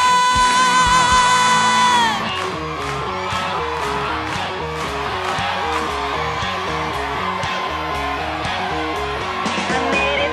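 Rock band music. A long held high note with vibrato slides down about two seconds in, then the band plays an instrumental passage: steady drums under a repeating riff.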